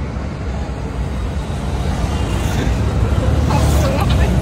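Ride noise from an open-sided rickshaw moving along a road: a steady low rumble of road, vehicle and wind noise with passing traffic, growing slightly louder towards the end.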